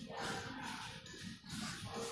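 Background music with a singing voice, playing over a shopping mall's sound system.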